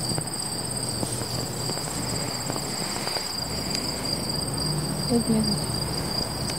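A steady chorus of crickets trilling continuously at two high pitches.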